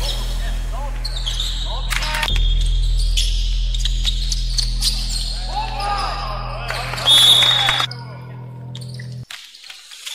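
The soundtrack's beat drops out, leaving a steady low bass under gym game sounds: a basketball bouncing, short squeaks and players' voices. About nine seconds in, everything cuts out suddenly to near silence.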